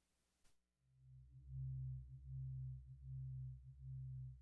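A low, steady-pitched tone repeating in even pulses about every three-quarters of a second, starting about a second in after the sound cuts out.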